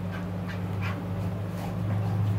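Bull terrier whimpering and panting in short bursts as it tussles with a person on a sofa, over a steady low hum.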